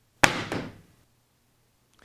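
A single sharp slam, like a paperback book dropped flat on a table, dying away within about half a second.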